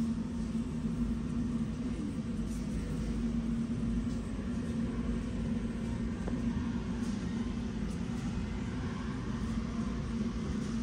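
Steady low rumble with a constant low hum underneath: the background noise of a large store aisle.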